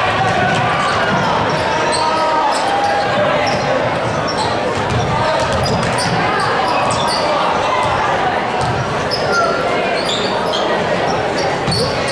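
A basketball dribbling on a hardwood gym floor under steady spectator chatter, echoing in a large gymnasium.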